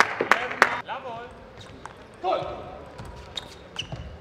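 Table tennis ball clicking sharply on the table or floor twice in the first second, with a few lighter ball clicks near the end.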